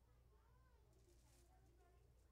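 Near silence: room tone with a low steady hum and faint, distant voices.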